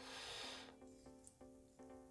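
Near silence with faint background guitar music, a few soft notes, after a brief soft noise at the start.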